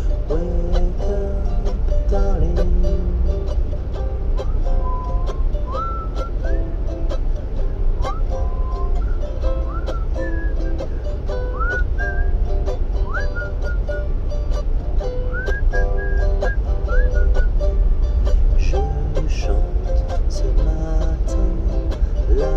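A ukulele played in a lullaby, with a whistled melody of swooping, gliding notes through the middle. Under it runs the steady low rumble of a moving passenger train.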